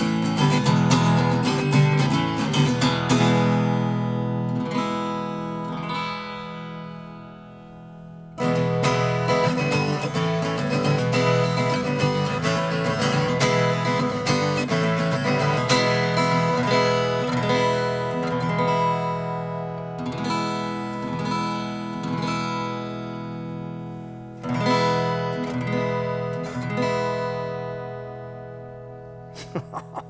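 Heavy strumming on two Santa Cruz Firefly small-body acoustic guitars with Brazilian rosewood back and sides, one topped with sinker redwood and the other with cedar. The first guitar's strummed chords ring and die away, then about eight seconds in the same strummed passage starts loudly on the second guitar and rings out toward the end.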